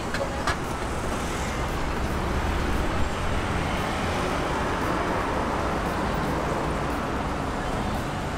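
A taxi pulling away from the curb and driving off, heard as a steady rush of car and street traffic noise.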